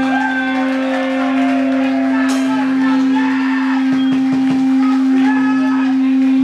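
Electric guitar ringing through its amplifier as a loud steady drone held on one pitch, with higher wavering tones above it, after the drums stop. A single sharp hit comes about two seconds in.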